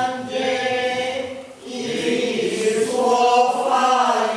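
A group of voices singing a slow chant in long held notes, with a short break about a second and a half in before the singing resumes.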